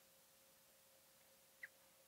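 Near silence: room tone with a faint steady hum and one faint tick near the end.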